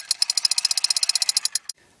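Toy gun firing a rapid burst of sharp clicks, about eighteen a second, for about a second and a half, then stopping abruptly.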